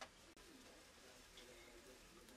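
Near silence: faint room tone, with one short click at the very start.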